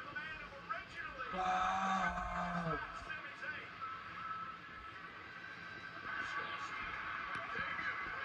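Wrestling TV broadcast playing in the room: a commentator's voice, strongest about one and a half to three seconds in, over a steady background din.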